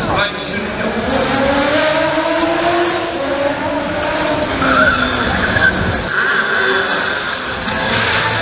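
Stunt car engines revving, their pitch rising and falling, with tyres squealing on tarmac.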